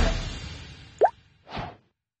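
Background rock music fading out, then a short sound effect with a quick upward sweep in pitch about a second in, and a brief whoosh half a second later.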